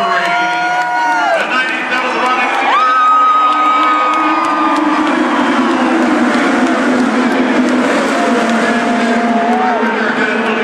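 IndyCar twin-turbo V6 engines passing at speed on the front straight at the start of the race, their notes rising and then falling in pitch as the cars go by. The crowd cheers underneath.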